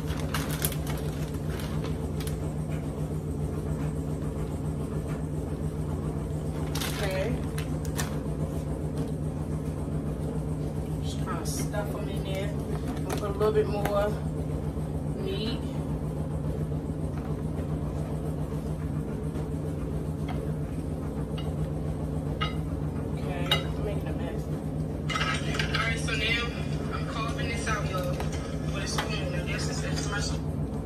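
Steady low hum, like a running motor or mains hum, with a few soft clicks and knocks from handling food and utensils on the counter.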